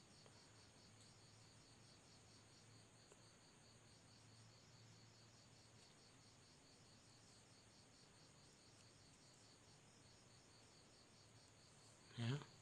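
Near silence, with faint insect chirping in a steady, evenly spaced high-pitched rhythm.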